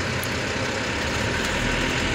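JMC 2022 truck's engine running steadily as the truck pulls away in first gear, heard from inside the cab; the low rumble grows a little stronger near the end.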